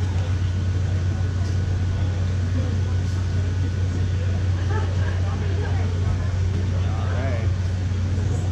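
Steady low hum from the stage amplifiers and sound system between songs, with faint crowd voices underneath.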